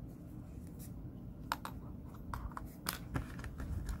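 Light handling sounds of crochet finishing: yarn drawn through the stitches with a tapestry needle, then a scatter of small clicks and taps in the second half as the metal needle is set down on a cutting mat and a pair of scissors is picked up.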